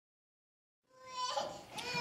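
Silence for about a second, then a man's speaking voice fades in mid-sentence, starting on a drawn-out vowel.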